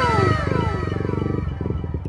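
Yamaha MT-15's single-cylinder engine running steadily at low revs with an even pulse, overlaid by an electronic sound effect of several tones gliding down in pitch that fades out about a second and a half in.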